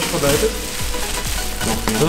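Plastic film and foil packaging crinkling and rustling as hands pull it back from a box, an irregular crackle.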